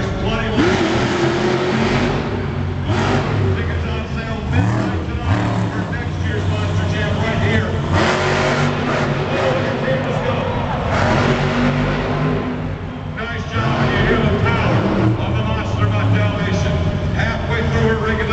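Monster truck engine revving up and down hard during a freestyle run, heard together with a loud public-address voice in the arena.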